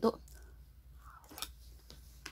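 A few soft clicks and mouth sounds of passion fruit pulp being eaten off a metal spoon. The sharpest click comes about one and a half seconds in.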